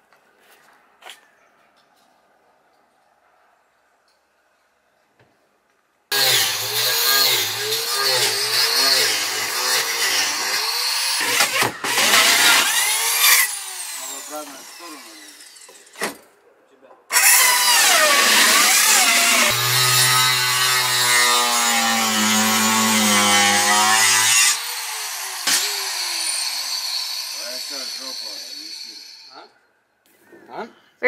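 Near silence for about six seconds, then an electric power saw starts and cuts into the shed's wooden floor. It runs loudly in long stretches, its pitch wavering as it bites, with short breaks before it cuts off near the end.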